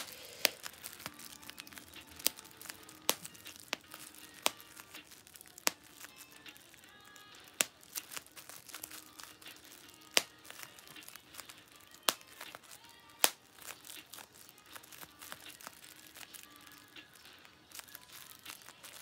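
Bubble wrap being popped by hand: sharp single pops at irregular intervals, about one a second, with faint music underneath.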